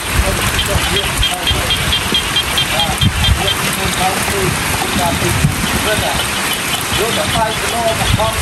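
Steady rain falling on leaves and flooded paddy fields. Scattered short chirping animal calls run through it, with a fast series of high ticks, about five a second, in the first half and again near the end.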